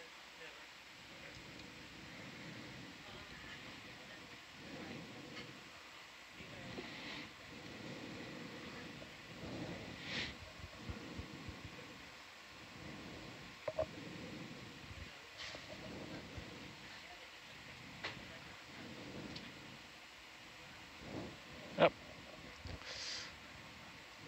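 Faint control-room background: a steady low hum and hiss with muffled, indistinct voices, broken by a few sharp clicks, the loudest near the end.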